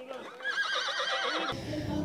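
A horse whinnying: one quavering call that starts about half a second in, lasts about a second, and cuts off suddenly.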